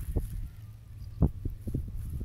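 Several soft, low thumps and knocks at uneven intervals: handling noise.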